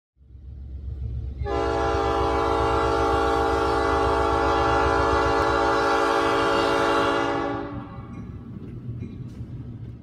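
Diesel locomotive's multi-chime air horn sounding one long blast of about six seconds, several notes held together as a chord, over a low engine rumble that carries on after the horn stops.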